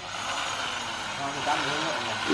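A steady motor noise with a strong hiss, with people talking faintly in the second half.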